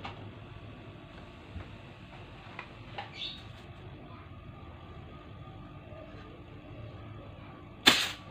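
Chest freezer's hermetic compressor running with a steady low hum during a test run to check whether the capillary tube is blocked. A few faint clicks are heard, and a single sharp, loud click comes near the end.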